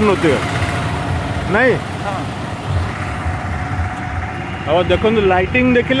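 Engine and road noise of a vehicle driving along a city road, a low rumble carrying a faint steady hum through the middle. Speech is heard at the start and again near the end.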